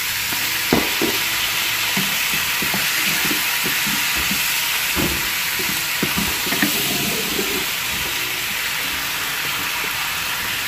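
Pork and vegetables sizzling in a wok, with soy sauce just poured in, while a wooden spatula stirs them, scraping and knocking against the pan several times.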